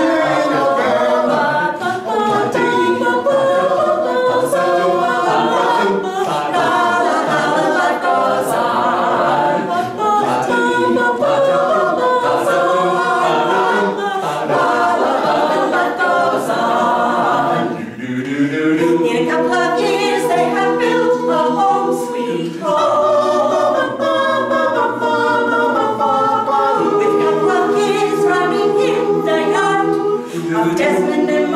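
Mixed a cappella vocal ensemble of seven men's and women's voices singing in harmony, with a brief dip in the sound about two-thirds of the way through before the chords come back in.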